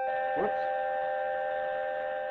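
A steady electronic tone of several pitches sounding together, held without change. A brief voice sound comes about half a second in.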